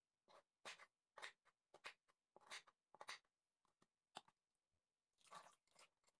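Kitchen knife chopping potato into cubes on a wooden cutting board: a string of faint, short chops, about two a second, with a brief pause near the end.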